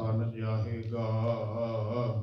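A man's voice chanting one long phrase at a nearly level pitch, with little break between syllables.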